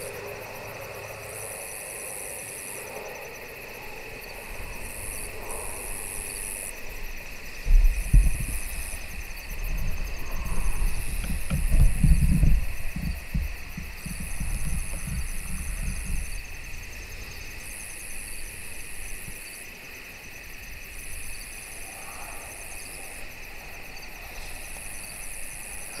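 Night insect chorus of crickets or katydids: a steady high trill, with a higher buzzing that starts and stops every second or two. About a third of the way in come several seconds of irregular low rumbling, louder than the insects.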